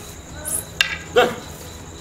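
Wooden aikido staffs (jo) striking: two sharp clacks, the second about a second in and louder, followed by a short falling vocal shout.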